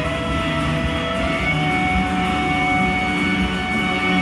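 Shoegaze rock band playing live: a dense, continuous wall of electric guitars with held notes that shift in pitch, over bass and drums.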